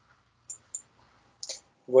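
A few light computer-mouse clicks while a screen share is being started, then a man's voice begins at the very end.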